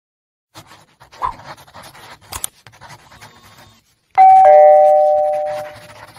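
Subscribe-animation sound effect: soft clicks and rustles with a sharp click about two and a half seconds in, then a loud two-note ding-dong doorbell chime, high then low, that rings out over about a second and a half.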